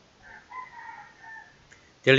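A rooster crowing once, faintly: a single drawn-out call lasting about a second.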